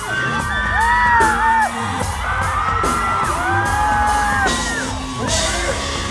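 Live rock concert music heard from within the audience, with several crowd voices whooping and singing along over it.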